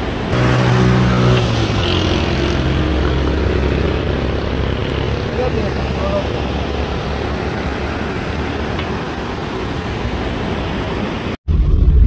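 Car engine and road noise heard from inside a moving car: a steady low rumble with a hiss of tyres and wind, travelling slowly on a rough road. The sound cuts out for an instant near the end.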